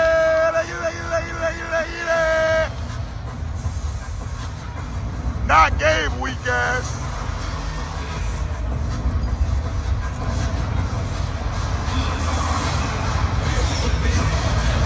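Arena sound system playing the pregame intro show's music and effects, with a deep bass rumble throughout. A held electronic tone runs for the first few seconds and pulses before cutting off, and a brief sliding voice-like call comes about six seconds in, over the hum of the crowd.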